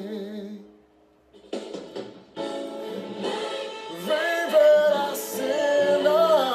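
Man singing a slow Portuguese gospel ballad over a backing track. A held note with vibrato fades out within the first second, followed by a short pause. The accompaniment then comes back in, the voice rejoins, and the music swells louder toward the end.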